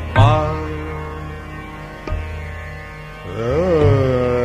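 Hindustani classical khayal in Raag Darbari Kanhra, over a steady tanpura drone: a long held note fades slowly after a deep tabla stroke, and a new phrase swells up and falls back near the end.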